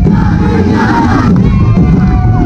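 Many voices shouting together in a battle-cry-like chant over loud, continuous drumming from a street-dance percussion band.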